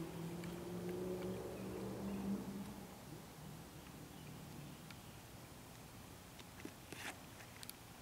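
Faint low steady hum that fades out about three seconds in, followed by a few faint short clicks near the end.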